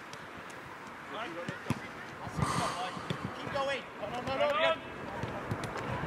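Footballers shouting to each other during five-a-side play, their calls loudest about four and a half seconds in, with the thuds of a football being kicked on artificial turf and a sharp knock just before two seconds in.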